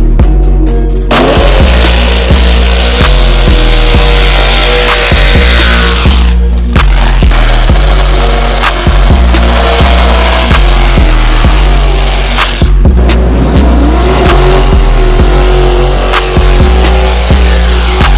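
Backing music with a heavy, repeating bass line mixed over drag race cars at the strip: engines revving and tyres squealing in burnouts, cut together with brief drop-outs between clips.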